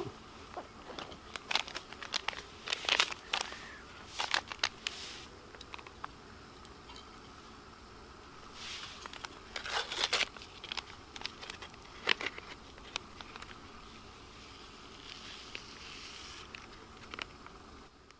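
Scattered clicks, clinks and rustles from handling an aluminium camping mug while mixing instant cappuccino, over a faint steady hiss. The handling is loudest in the first few seconds and again around ten seconds in.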